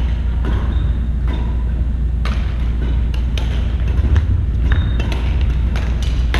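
Badminton rally on a wooden gym floor: sharp racket-on-shuttlecock hits at irregular intervals, several in the second half, with a few brief sneaker squeaks. A steady low rumble runs underneath.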